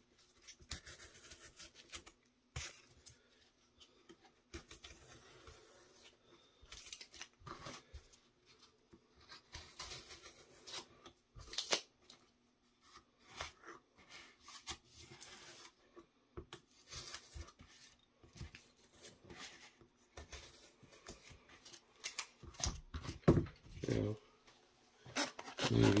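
Hobby knife cutting painted foam board on a cutting mat: short scratchy strokes of the blade through the board, stopping and starting, with one sharp click about halfway through. In the last few seconds, the board pieces are handled and pressed into place.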